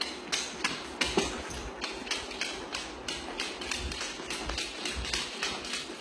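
A Siberian husky's claws clicking on a hardwood floor as she walks, mixed with a person's footsteps: an uneven run of sharp clicks, about four a second.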